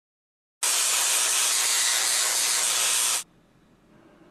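A loud, steady, high hiss that starts about half a second in and cuts off suddenly after about two and a half seconds, leaving only a faint noise.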